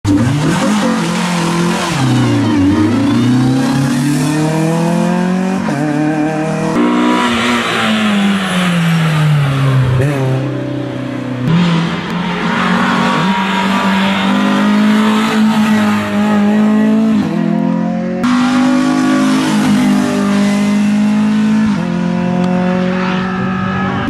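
Renault Clio Cup race car's four-cylinder engine driven hard, its revs climbing and dropping again and again through gear changes and lifts for corners. It is heard in four separate passes, each breaking off abruptly.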